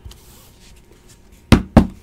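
Two sharp knocks about a quarter second apart, near the end: a stack of rigid plastic card top loaders tapped to square it up.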